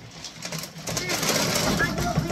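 Dry cattle feed tipped from a tilted black feed tray into the feed bin: a rushing, rattling hiss that builds about a second in.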